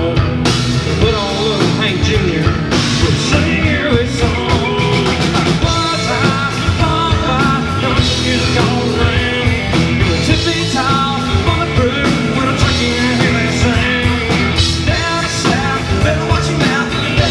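Live country-rock band playing, with drums, electric bass, and acoustic and electric guitars.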